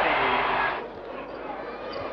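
Basketball arena crowd cheering loudly after a made basket, cut off suddenly under a second in, then a quieter steady crowd murmur.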